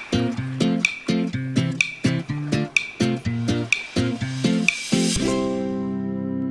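Background music: a plucked-string track with a steady beat and a sharp tick about once a second. About five seconds in it gives way to a soft, sustained chord.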